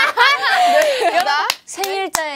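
Several young women laughing loudly together, with a few hand claps, for about a second and a half before the laughter breaks off.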